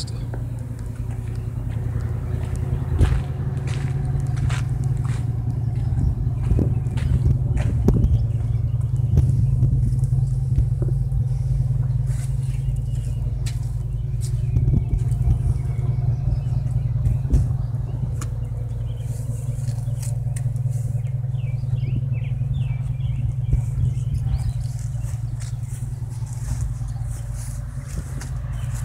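A motor engine idling steadily, heard as a constant low rumble, with scattered knocks and clicks over it.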